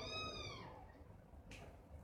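A single faint, high-pitched, cat-like call lasting under a second, its pitch rising and then falling.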